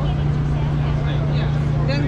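Steady low hum from a food truck's running equipment, unchanging in pitch, with people's voices talking over it.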